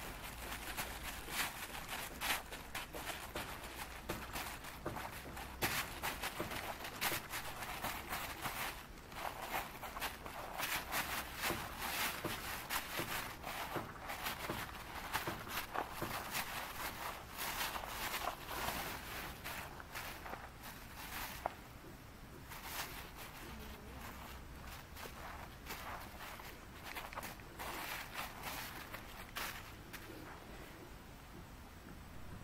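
Hand kneading and stirring a damp, crumbly bait mix inside a plastic bag: the bag crinkles and rustles with dense, irregular crackles, heavier for most of the time and lighter near the end.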